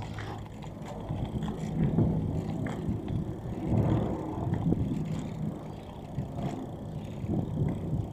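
Ride noise of an e-bike rolling up a street of patterned paving blocks: an uneven low rumble from the tyres and frame, with louder swells about two, four and seven seconds in.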